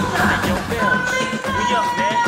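Hip-hop mixtape intro beat playing, with long held high notes over the music.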